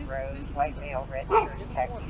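Belgian Malinois police dog giving a few short, high barks and yips.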